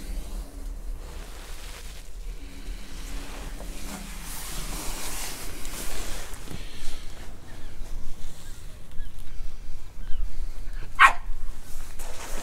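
A dog gives one short, sharp bark about 11 seconds in, over a steady low rumble.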